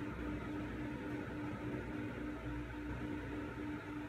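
Steady background room noise: a low hum and hiss with a faint, evenly pulsing tone, and no distinct events.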